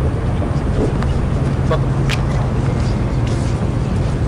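Steady low outdoor rumble with a constant low hum, and faint voices among the crowd.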